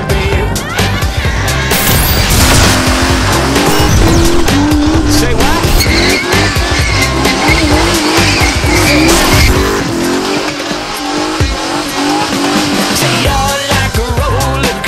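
Car tyres squealing and an engine revving up and down during a smoky burnout, over music with a steady beat. The tyre and engine sound sets in about two seconds in and fades out about nine and a half seconds in, leaving the music.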